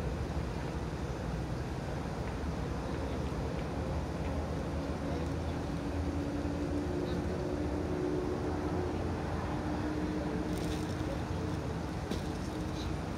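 Steady low rumble of outdoor background noise and wind on a phone microphone, with faint held tones in the middle stretch.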